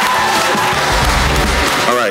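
Audience applauding and cheering over background music with a low bass beat.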